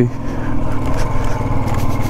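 Royal Enfield Thunderbird 350's single-cylinder engine running steadily as the motorcycle rolls along a dirt road, with a steady rush of road and wind noise.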